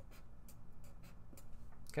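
A pen writing by hand on paper in a series of short, faint scratching strokes, as numbers are written out.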